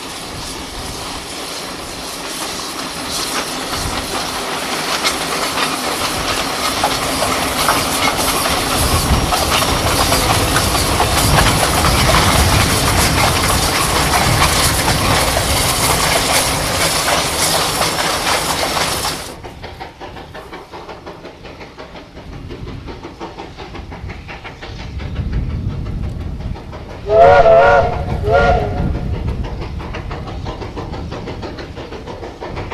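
Steam locomotive hauling a sugar-cane train: the beat of its exhaust and the clatter of the cane wagons grow louder as it passes close, then break off suddenly. After that the train works on more quietly, and near the end its steam whistle sounds twice, a longer blast and then a short one, in several tones at once.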